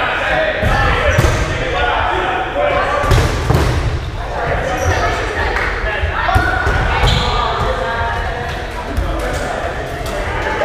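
Dodgeballs being thrown and bouncing and thudding on a wooden gym floor, with scattered short impacts throughout, over players' voices calling out. The sound echoes in a large gymnasium.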